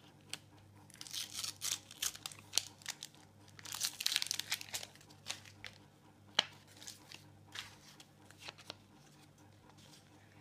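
A Panini sticker packet wrapper being torn open and crinkled by hand, in a run of short tearing bursts over the first few seconds. Softer rustling and a sharp click follow as the stickers are handled.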